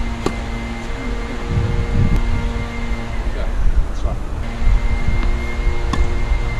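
A steady mechanical hum made of several held tones, which drops out for about a second and a half in the middle and comes back, over a low rumble. A single sharp tap comes just after the start, a tennis ball bouncing on the court.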